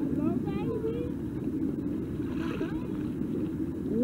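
Steady low rumble of motorboats on a busy lake, with water lapping close by. Faint distant voices call out in the first second and again about halfway.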